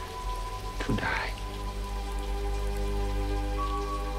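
Steady rain from a film soundtrack, with soft sustained synthesizer chords held underneath. A brief quiet voice comes in about a second in.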